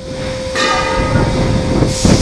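LPG cylinder filling equipment at work: a loud rushing hiss of gas with a low rumble, building up over the first half second and then holding steady, with a steady hum underneath.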